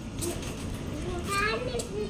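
Children's voices and chatter in the background, one voice rising and falling faintly through the second half, over outdoor street ambience.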